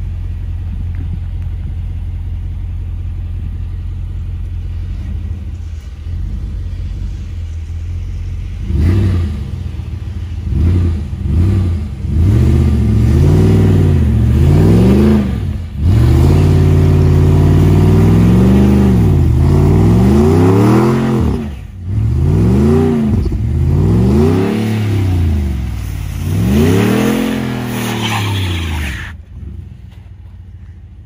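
Ram 1500 pickup engine idling steadily, then revved over and over in a burnout attempt on ice, each rev rising and falling in pitch, with one long held rev midway. The sound cuts off suddenly just before the end.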